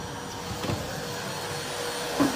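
Vacuum cleaner running steadily: an even motor rush with a thin, constant whine.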